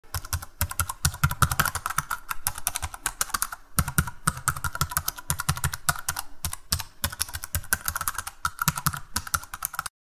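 Typing on a computer keyboard: a rapid run of key clicks, with brief pauses about half a second in and near four seconds, stopping just before the end.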